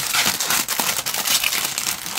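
Clear plastic bag crinkling as it is handled and opened to take out a plastic model kit sprue, a continuous crackle with small clicks.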